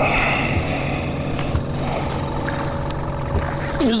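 A boat motor humming steadily, a low hum with a fainter, higher steady tone above it.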